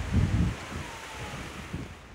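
Wind buffeting the microphone outdoors, with a strong low rumbling gust in the first half second over a steady rushing hiss.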